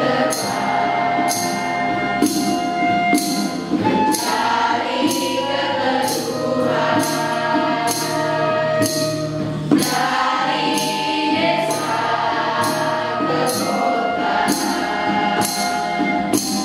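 Mixed teenage choir singing a slow song in Indonesian with acoustic guitar accompaniment, over a steady beat of crisp high percussive strikes about every three-quarters of a second.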